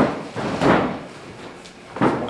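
Feet slapping and thudding on gym mats during shooting drills (level drop and penetration step), two dull thuds: a sharp one at the very start and a broader one about three quarters of a second in, echoing in a large room.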